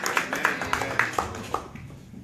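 Congregation clapping to welcome a visitor, fading out about a second and a half in.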